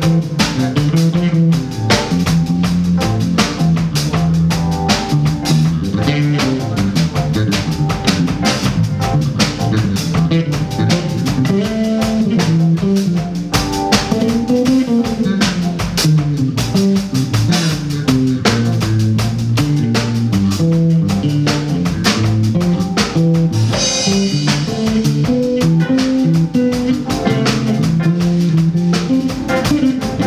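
A live band plays an instrumental passage on electric guitar, bass guitar, drum kit and keyboards, with a moving bass line under steady drumming. There is a bright cymbal-like splash about 24 seconds in.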